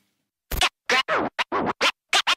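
A run of short DJ scratches, about six in quick succession, each with its pitch sweeping sharply up or down, starting about half a second in after a brief silence.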